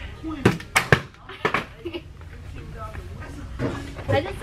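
Rolls of wrapping paper clashing in a mock sword fight: several sharp smacks in quick succession in the first second and a half.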